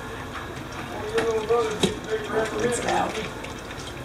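Mostly speech: a high-pitched voice talking for about two seconds, starting about a second in, with a single sharp knock in the middle of it.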